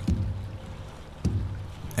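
Sound effect of a wooden ship: two low creaks start suddenly about a second apart and each dies away.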